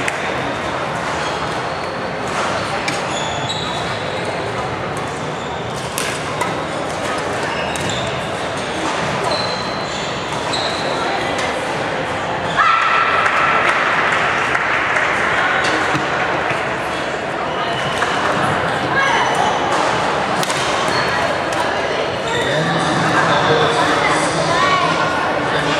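Badminton play on a wooden hall floor: brief high squeaks of shoes on the court and sharp racket strikes on the shuttlecock, over steady chatter of people echoing in a large sports hall. The chatter grows louder about halfway through.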